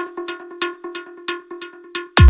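Breakdown of an electronic dance track: a rapid pattern of metallic, cowbell-like percussion hits, about five a second, ringing over steady pitched tones, with no bass drum.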